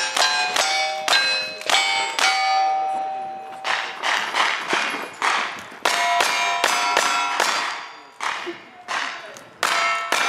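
Rapid gunfire at steel targets, each shot followed by the ring of the struck plate: lever-action rifle shots first, then single-action revolver shots after a short stretch without ringing.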